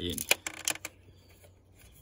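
Hand-held L-shaped Torx key turning a T30 Torx screw out of a plastic dashboard panel: a quick run of small clicks and scraping, stopping about a second in.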